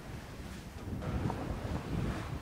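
Wind buffeting the microphone on the deck of a racing sailboat at sea: a steady low rumble, with the wash of the sea beneath it.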